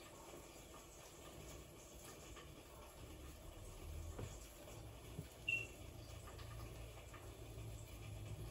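Quiet room tone with faint soft handling sounds of dough being rolled up by hand on a wooden board, over a low hum. One brief high-pitched chirp about five and a half seconds in.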